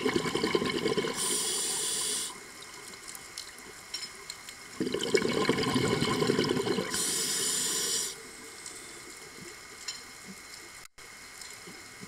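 Scuba regulator breathing underwater, twice: each breath is about two seconds of bubbling exhaled air followed by a short hiss of inhaled air through the regulator, with quiet pauses between breaths.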